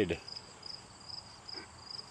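Crickets chirping in a steady, even rhythm of short high chirps, about three a second.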